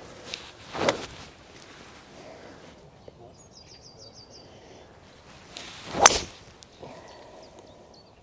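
A fairway wood swung and struck off the tee: a rising whoosh of the swing ends in a sharp, crisp crack as the clubface hits the ball, about six seconds in. A shorter swish comes about a second in, and a bird chirps a quick run of notes in between.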